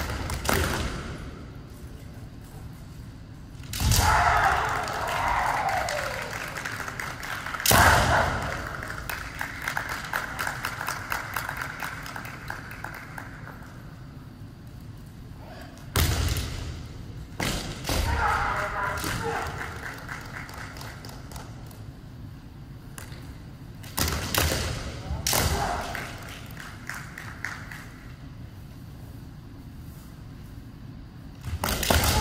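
Kendo bout: several sharp cracks of bamboo shinai striking armour, with stamping feet on the wooden floor, each exchange followed by a long drawn-out kiai shout lasting a few seconds.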